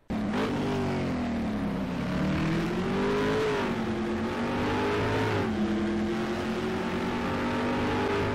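Car engine accelerating under load, its pitch climbing and dropping back twice, then holding steady at a constant speed.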